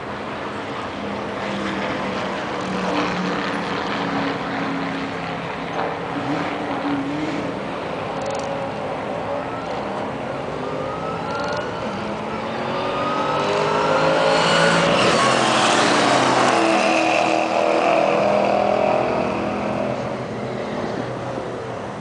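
Two Mustang V8s drag racing: engine sound at the line, then about halfway through a launch and hard acceleration, rising in pitch through the gears. The run is loudest in the last third, then fades near the end.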